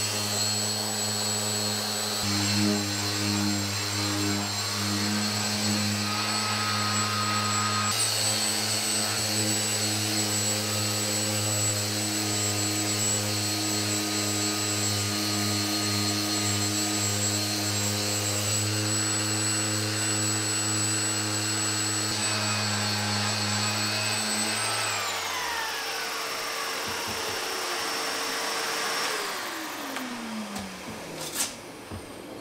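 Random orbital sander running on a wooden plank floor, with a shop vacuum drawing off the dust through a hose: a steady machine hum with a high whine. Near the end the machines are switched off and wind down in a falling whine.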